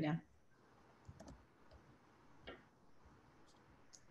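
A handful of faint, scattered clicks from computer use, as the files are being sent.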